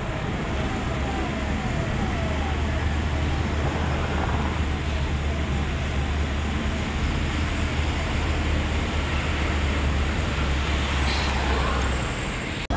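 Steady road and engine noise from inside a moving vehicle, a continuous low drone under an even rushing hiss.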